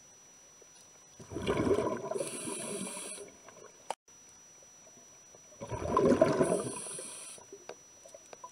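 Underwater recording of a diver breathing through a regulator: two breaths a few seconds apart, each a bubbling rush with a hiss lasting about two seconds.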